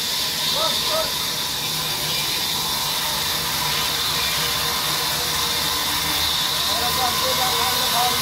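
Large sawmill band saw running with a steady, even hiss and hum, with men's short calls heard over it near the start and near the end.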